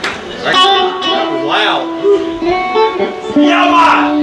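Live band playing, led by electric guitar with notes held and ringing out, and voices over the music.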